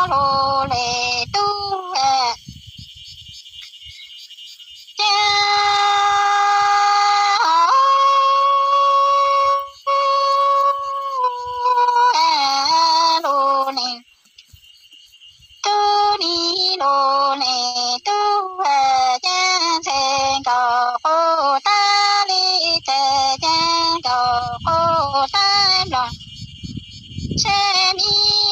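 A woman singing Hmong sung poetry (lug txaj) solo, in long held notes that slide between pitches. The phrases are broken by two short pauses, about two seconds in and just past the middle.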